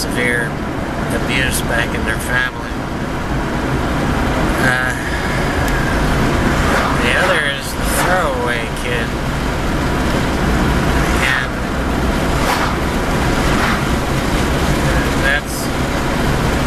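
Steady road and engine rumble inside the cabin of a moving car, with a man's voice coming and going over it.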